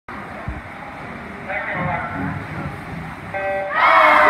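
Crowd chatter echoing in an indoor pool hall, then a short, steady electronic start tone about three and a half seconds in, at once followed by loud shouting and cheering as the swimming race begins.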